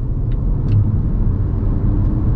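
Road noise inside the cabin of a Volvo V60 B4 cruising on an expressway: a steady low rumble of tyres and drivetrain, with a couple of faint ticks in the first second.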